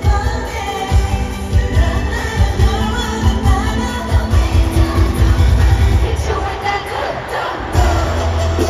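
Live K-pop played loud through stadium speakers: a pounding bass beat under female vocals. The beat drops out briefly near the end, then a long low bass note comes in.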